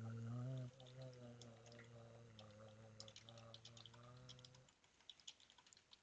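Faint computer keyboard typing, a run of quick light key clicks, over a person humming one low, steady note that stops a little before the end.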